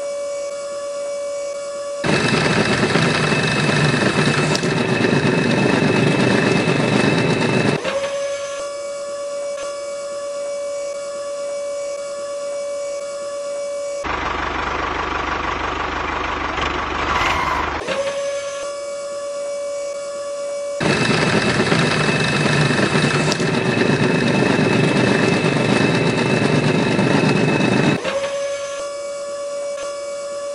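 Small motor on a miniature model tractor driving its post-hole auger: a steady high whine, growing louder and rougher for two stretches of about six seconds each, as the auger bores into sand.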